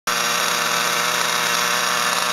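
Motonica nitro glow engine in an RC car idling steadily while the car sits still, a high buzzing hum that holds one pitch.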